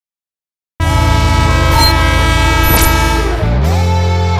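Loud TV-show intro music with a train-horn sound effect, starting abruptly about a second in as a chord of steady tones that slide down in pitch near the end.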